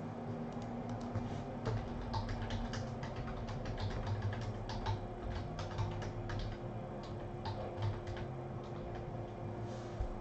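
Typing on a computer keyboard: a run of irregular keystroke clicks, several a second, as a short list of names is keyed in.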